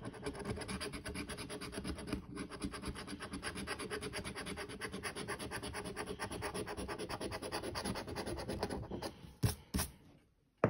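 A round metal coin-style tool scraping the coating off a scratch-off lottery ticket in rapid, even back-and-forth strokes. The scratching stops shortly before the end, followed by two short knocks.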